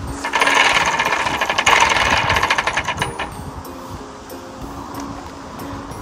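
A tabletop prize wheel spun by hand, its pointer clicking rapidly against the pegs on the rim, slowing and stopping about three seconds in.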